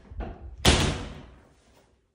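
A metal-framed glass shower door swung shut: a light knock, then one loud bang about two-thirds of a second in as it meets the frame, with a rattle that dies away over most of a second.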